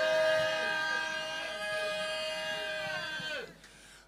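A sustained keyboard chord, several notes held steady for about three seconds, bending down in pitch and cutting off suddenly near the end.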